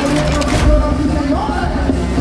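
Latin music with a steady bass line, with a brief loud noisy burst about half a second in.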